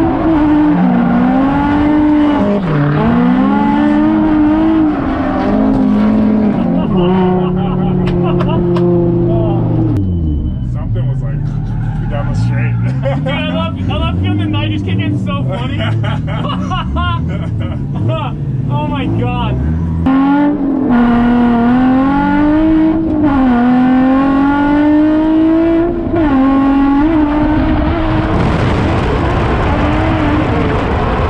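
Nissan 350Z drift car's engine heard from inside the cabin, revs rising and falling over and over as it is driven hard. For about ten seconds in the middle the engine drops to a lower, steadier note before the revs start swinging again.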